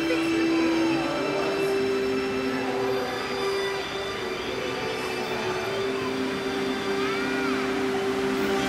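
A group of students singing a slow song together in long held notes, the melody moving up to a new note about a second in.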